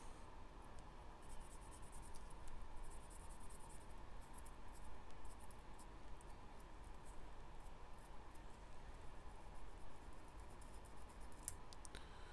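Faint small clicks and scratching of fine metal hobby tools, tweezers and a craft knife, working on a tiny soldered brass part.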